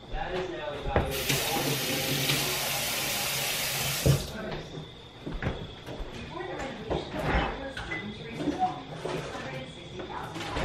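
A steady hiss that lasts about three seconds and cuts off sharply, surrounded by light knocks and kitchen clatter.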